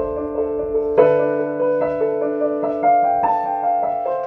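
Electronic keyboard on a piano sound, playing slow held chords. A new chord or note is struck about every second, the strongest about a second in.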